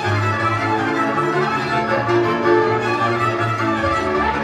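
Folk string band playing dance music: a fiddle melody over a bowed bass line, steady throughout.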